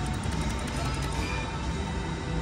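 VGT 'Hunt for Neptune's Gold' slot machine playing its electronic music and tones as the reels spin, over the steady din of a casino floor.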